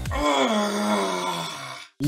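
A man's long, drawn-out groan of exasperation, one held vocal sound that dips slightly in pitch early on and fades out just before two seconds. Backing music cuts off about a quarter second in.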